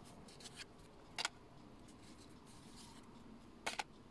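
Small picture cards being handled and flipped in the hands: faint rubbing and a few short clicks, the clearest about a second in and a quick double click near the end.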